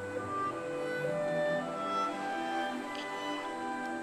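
Soft background music with bowed strings, sustained notes changing slowly.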